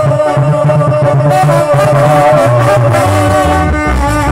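Live band music: trombones play a held melodic line over electric keyboard and a steady bass, with no singing.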